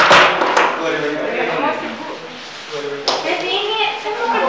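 Several people talking over one another in a classroom, words not made out, with a sharp knock at the very start and a smaller click about three seconds in.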